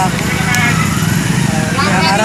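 A man's voice speaking briefly over a steady low engine hum.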